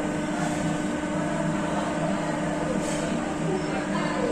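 A steady machine-like hum with a constant low tone over a background rush, unchanging throughout.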